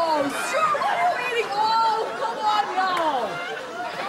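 Voices without clear words: a man crying out and wailing in drawn-out, sliding tones, with other voices overlapping.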